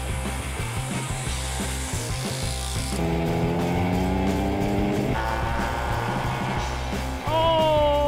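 Background music mixed with the high, buzzing drone of a small pocket-bike engine held at high revs, with a hiss in the first three seconds; a voice begins near the end.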